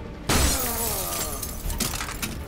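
A glass panel smashing with a sudden crash about a third of a second in, then broken glass scattering and tinkling as it dies away.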